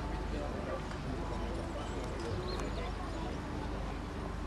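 Hoofbeats of a horse-drawn carriage team trotting on arena sand, with the murmur of voices from the stands behind.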